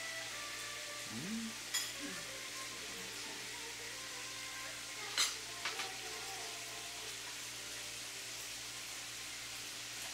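A steady, even hiss in the background, with faint TV sound beneath it and a few sharp clicks about two and five seconds in.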